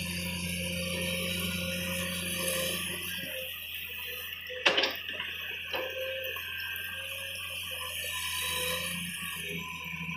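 Komatsu PC210 excavator's diesel engine running with a steady drone and hydraulic whine, dropping in pitch and load for a few seconds before rising again. A sharp clatter about halfway through, with a smaller one a second later, as the bucket swings over the dump truck.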